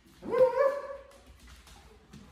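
A dog gives one drawn-out bark that rises in pitch and then holds for about a second.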